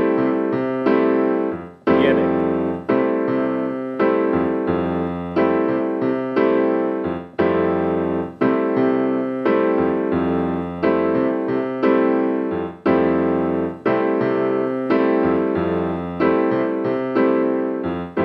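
Piano playing a bossa nova rhythm slowly, as a practice pattern for hand independence: right-hand chords and left-hand bass notes, sometimes struck together and sometimes alone, at about one attack a second.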